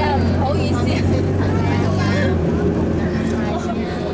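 People talking inside a moving bus, over the bus engine's steady low drone, which drops away about two and a half seconds in.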